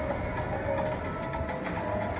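Music played over an outdoor public-address loudspeaker, with steady held notes over a low background rumble.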